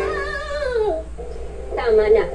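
Television commercial audio heard through the TV's speaker in a room: a voice holds one sung note that slides down in pitch and fades about a second in. A new voice starts near the end as the next ad begins.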